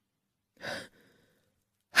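A single short breath from the audiobook narrator, a little over half a second in.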